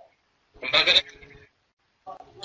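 A single short syllable in a person's voice, heard about half a second in, over an online voice-chat line. The line drops to dead silence between utterances.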